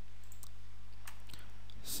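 A few sparse, faint computer keyboard keystroke clicks over a steady low electrical hum.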